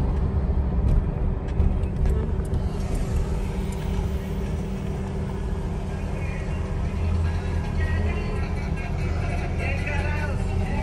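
Steady low engine and road rumble heard inside a moving car's cabin.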